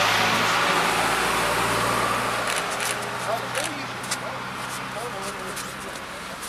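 A motor vehicle passing on the road, a rushing noise loudest at first and fading over about three seconds, over a steady low engine hum. Faint voices and a few clicks follow in the second half.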